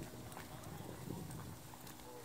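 Footsteps of many people walking on a paved path, an irregular patter of shoes, with faint crowd chatter.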